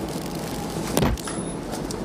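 Steady outdoor background noise with a single sharp knock about a second in.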